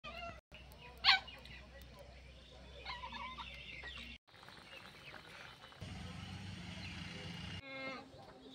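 Short animal and bird calls over outdoor background sound, the loudest a single sharp call about a second in. The sound cuts out briefly twice.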